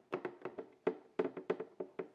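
Hand screwdriver driving a screw into the plastic back cover of a dryer control board: a string of small, irregular clicks and taps.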